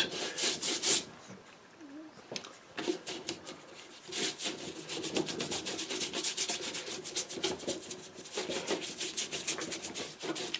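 A wide flat hake brush swept rapidly back and forth over Saunders Waterford 90 lb watercolour paper, wetting it with water. Each stroke gives a quick brushy scrub. The strokes are louder in the first second, fainter for a few seconds, then come steadily and fast.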